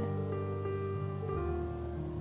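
Soft background music of long held notes, with the low note changing about two-thirds of the way through.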